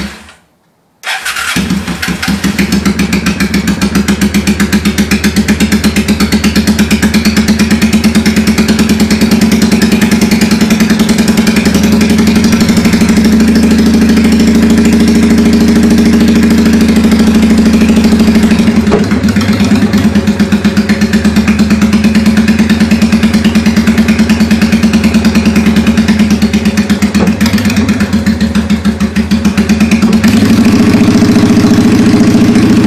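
2005 Honda Shadow Spirit 750's V-twin running cold without choke just after start-up, loud and pulsing through Vance & Hines Straightshots pipes with no baffles. Sound cuts out completely for about a second near the start, then the engine idles on with slight rises and dips in speed.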